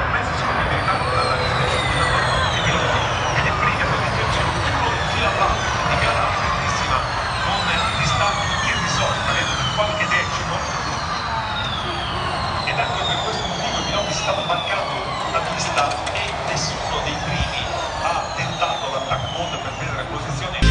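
Formula E race cars' electric drivetrains whining as they pass one after another. Each high whine falls in pitch over a few seconds, the whines overlapping, over crowd noise.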